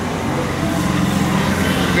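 A motor vehicle's engine running, a steady low hum.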